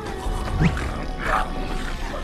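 A cartoon troll's deep, growling snore over background music. It starts about a quarter second in and swells twice.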